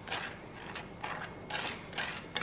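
Table knife spreading peanut butter across crisp, well-toasted bread: a few soft rasping scrapes, one stroke after another.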